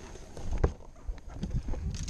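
Knocks and bumps of handling against a bass boat's gunwale, the loudest single knock about two-thirds of a second in, with a few weaker ones after it over a low rumble.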